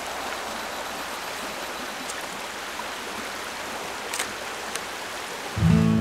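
Steady, water-like hiss of outdoor woodland ambience, with a few faint ticks. Acoustic guitar music comes in near the end.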